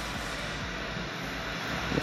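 Kia Sorento's power tailgate rising under its electric motors, a steady whirring.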